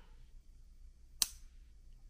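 One sharp click about a second in from the blade of a Shirogorov F95 flipper knife snapping into place.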